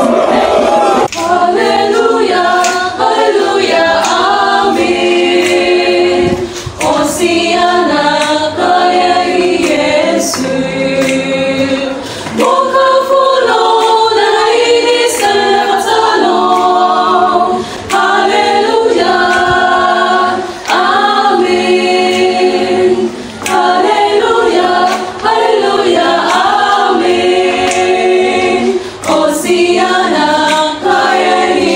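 A large group of voices singing together as a choir, in phrases with short breaks between them.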